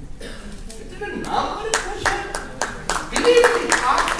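Audience clapping that starts about a second in and grows into many individual claps, with voices mixed in.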